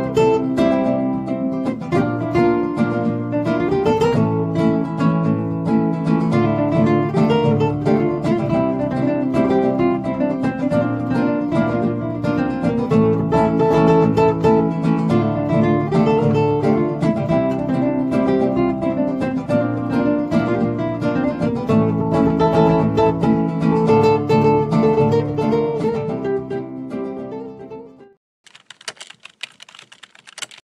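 Angel Lopez cutaway nylon-string flamenco guitar played fingerstyle in a continuous melodic passage that fades out near the end. A short, faint sound follows in the last two seconds.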